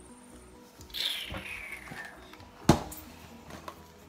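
Faint background music with a falling whoosh about a second in, then one sharp click a little before the three-second mark.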